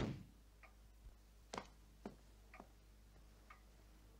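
Faint ticking of a wall-mounted pendulum clock in a quiet room, about five short, unevenly spaced ticks, after a louder sound dies away right at the start.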